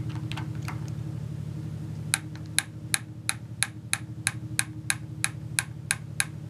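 A quarter-inch-drive torque wrench's ratchet head clicking in an even series, about three light clicks a second from about two seconds in, over a steady low hum.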